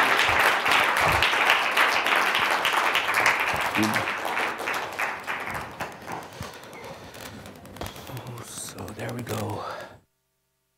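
Audience applause in a lecture hall, loud at first and thinning out to a few scattered claps over about six seconds.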